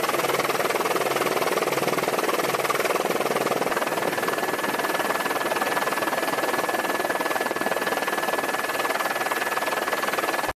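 Loud, steady rushing noise with no beat or rhythm. A thin high whine joins it about four seconds in and holds steady.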